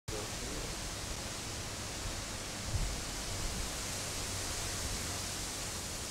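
A steady, even rushing noise, full and unbroken across high and low pitches, with a brief low bump about three seconds in; it cuts off abruptly at the very end.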